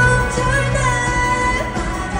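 A woman singing a pop song live into a microphone, holding and bending long notes, over a live band with drums and electric guitars, amplified through the concert sound system.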